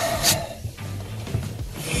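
Metal handling noise as a threaded rod with a nut and washer is worked into a sailboat's stern tube: one sharp metallic click just after the start, then light rubbing.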